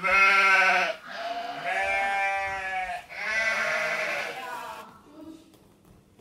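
Three long, wavering, bleat-like vocal calls, one after another. The first is the loudest, and a short pause comes between each.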